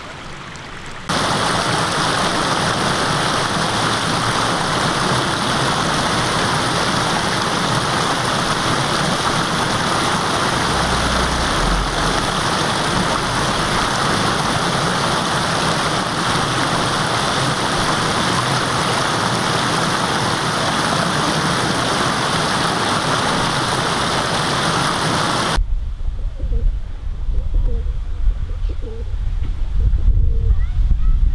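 Water pouring over a low weir, a steady rushing noise that starts abruptly about a second in and cuts off a few seconds before the end. After it, wind rumbles on the microphone.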